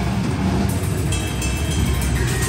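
Death metal band playing live: a dense, low, distorted guitar and bass wall with few distinct drum hits, and a steady high note or feedback tone coming in about halfway through.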